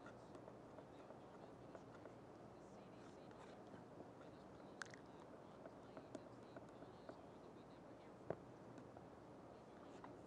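Near silence: quiet room tone with a few faint taps and light scrapes of a brush mixing paint on a wooden palette, the clearest tap about eight seconds in.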